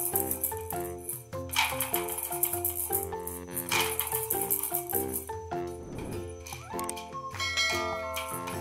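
Small plastic balls rattling inside a toy bath submarine's clear dome in a few short bursts as it is pushed along, over background music.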